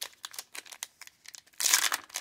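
Foil wrapper of a 2004 Fleer Tradition baseball card pack crinkling in the fingers as it is torn open, with a louder tear near the end.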